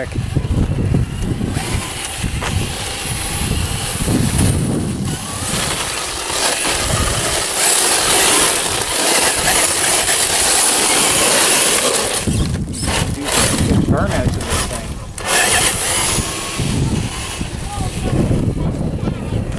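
Traxxas TRX-4 RC crawler driven fast over a gravel driveway on a 3S LiPo, its tyres crunching over loose gravel in a continuous hiss that is loudest in the middle.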